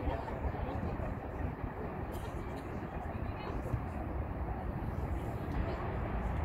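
Faint, indistinct voices of distant players and spectators over a steady low rumble.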